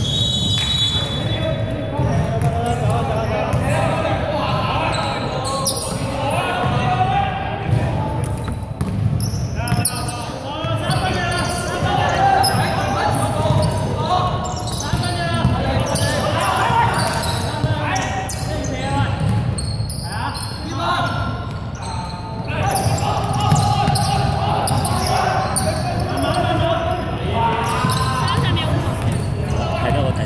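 Basketball bouncing on a hardwood gym floor during play, with shouting voices of players and onlookers echoing through a large sports hall. A short high whistle sounds right at the start.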